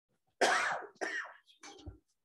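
A person coughing: one loud cough about half a second in, then a shorter second one.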